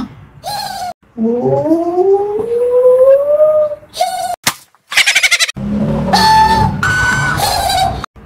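Air squealing out of the stretched neck of a blown-up rubber balloon: one long whine that rises slowly in pitch. After it comes a quick run of short squeaks, then two held squeaky notes, the second higher.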